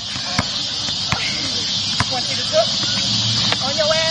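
A basketball bouncing on an outdoor asphalt court, a few sharp thuds about a second apart, over a steady high drone of insects, with faint voices now and then.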